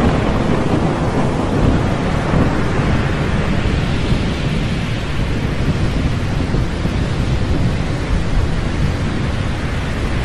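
A steady, loud, deep rumbling noise with a hiss above it, much like a thunderstorm.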